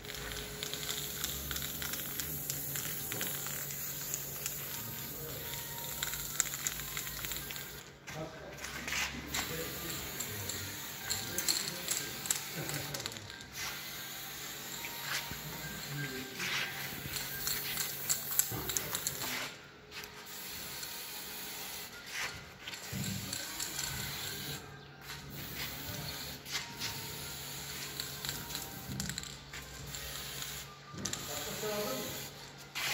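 Aerosol spray-paint can hissing in long bursts as a bicycle frame is painted, broken by several short pauses between passes.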